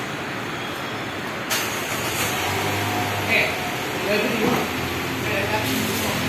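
Aftermarket electric tailgate struts on an MG ZS running as the power tailgate moves, a steady low motor hum lasting about a second and a half, after a short click about one and a half seconds in. Steady traffic and workshop noise lies under it throughout.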